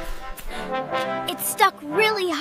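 Background music with held brass notes, trombone-like, in a dramatic sting.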